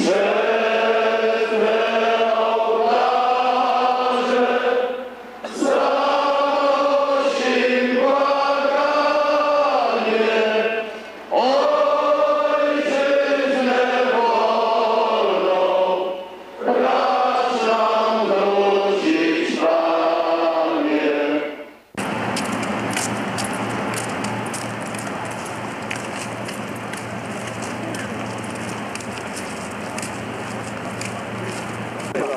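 A large outdoor crowd singing a slow hymn together, in long held phrases with short breaks between them. About two-thirds of the way through, the singing cuts off abruptly and gives way to a steady outdoor rumble with wind noise on the microphone.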